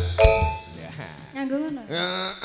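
A single struck metal percussion note rings with several clear tones and fades over about half a second. Then comes a man's voice with a sliding pitch.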